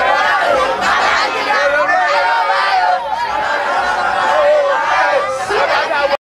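A crowd of excited boys shouting and yelling together at close range, many young voices overlapping at once.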